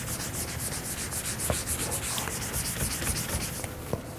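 Whiteboard being wiped with an eraser: quick, even back-and-forth rubbing strokes, about five or six a second, that stop shortly before the end, with a couple of faint knocks.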